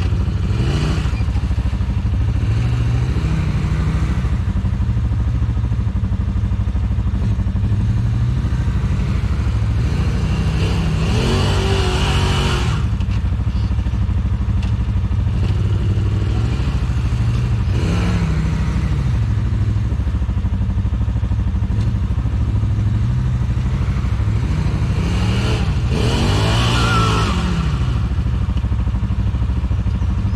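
Side-by-side UTV engines: a steady low idle throughout, with another side-by-side's engine revving up and back down several times as it climbs a rock ledge out of the river, the longest and loudest revs near the middle and near the end.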